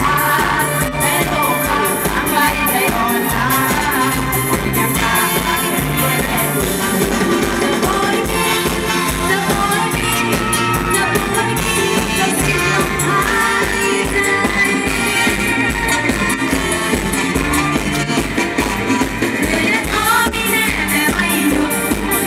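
A live Isan mor lam band plays a toei-style song with a steady drum beat, while a woman sings over it through the stage sound system.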